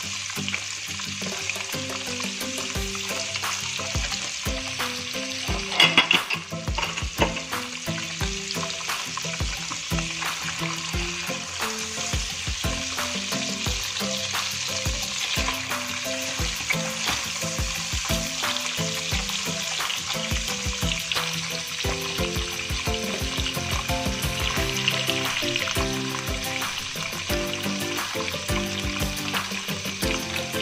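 Egg tofu slices sizzling steadily in hot oil in a nonstick wok. A spatula knocks and scrapes against the pan as the pieces are turned, loudest about six seconds in.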